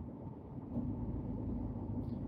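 Low, steady vehicle rumble heard from inside a car's cabin, growing a little louder about half a second in.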